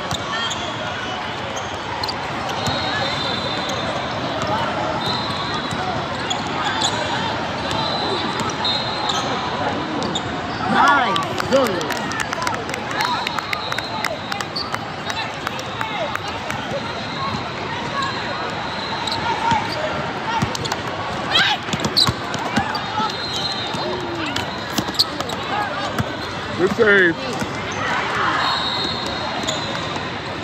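Basketball game sounds in a large reverberant hall: a basketball bouncing on the hardwood court, with a constant background of voices from players and spectators.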